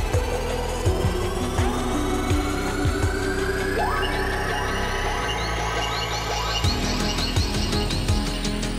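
Electronic background music with a steady low beat and tones that climb slowly in pitch, building up; the beat drops out for a moment near the end before returning.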